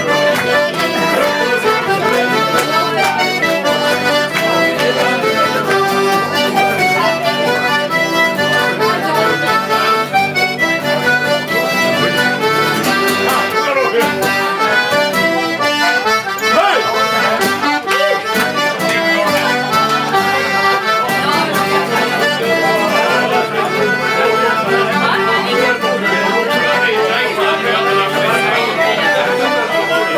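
Accordion playing a traditional tune without a break, with people talking in the background.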